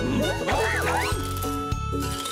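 Bouncy children's cartoon music with a steady beat, overlaid with high squeaky cartoon character voices sliding up and down in pitch during the first second or so.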